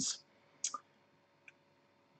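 A short hiss and a couple of faint small clicks, just after half a second and again about a second and a half in, in an otherwise quiet pause between words.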